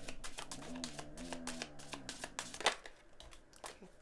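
Tarot or oracle cards being handled on a table: a string of light clicks and rustles of card stock as cards are turned and laid out.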